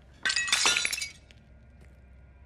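Glass shattering: one sudden, loud crash a quarter of a second in, with ringing shards, over in under a second.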